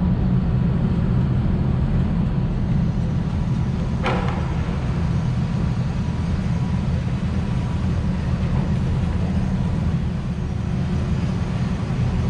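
Steady low rumble of a motor yacht's engines as it cruises slowly past close by, with a brief faint higher sound about four seconds in.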